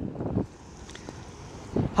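Fast, muddy floodwater rushing down a desert oued in spate, a steady rush of water. Wind buffets the microphone in the first moment and again just before the end.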